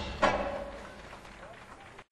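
A break between songs in a live rock band recording. The music breaks off, a voice speaks briefly about a quarter second in, and the sound then fades to faint hall noise.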